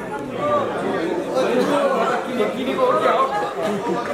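Many people talking at once in a large, echoing hall: overlapping chatter with no single voice standing out.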